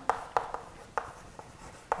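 Chalk writing on a chalkboard: a series of short chalk strokes and taps.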